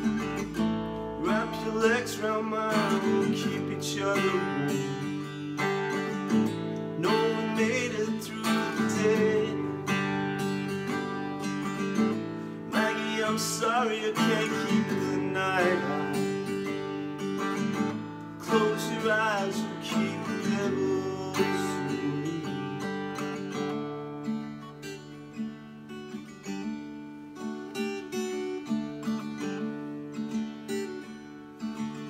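Steel-string acoustic guitar strummed in a steady folk rhythm, with a man's voice singing over it in a few phrases. The playing gets softer for the last several seconds.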